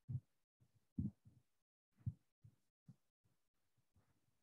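Faint, short, low thumps and rubs, a few a second, as a chalkboard is wiped clean with a duster.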